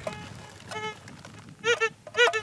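Fisher Gold Bug 2 VLF metal detector giving target tones as its coil sweeps over iron-bearing rock: a faint short tone about a second in, then two quick rising-and-falling blips near the end.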